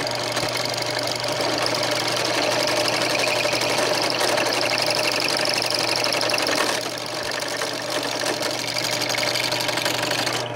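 Drill press running, its bit cutting into a metal pipe fitting to enlarge a hole: a steady motor hum under the rasp of the cut, which gets quieter about seven seconds in.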